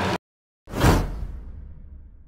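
A whoosh sound effect that swells quickly a little under a second in and then fades away over about a second and a half, with a low rumble under the tail.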